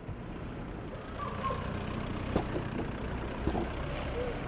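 Steady low hum of an idling vehicle engine in street ambience, with a couple of brief faint sounds about two and a half and three and a half seconds in.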